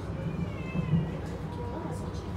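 Inside a moving Transilien line H electric train: steady low rumble of the running train, with a wavering high-pitched squeal in the first second and a low bump about a second in.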